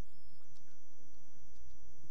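A pause in speech filled with the room's low steady rumble and a faint high-pitched whine, with a few faint ticks.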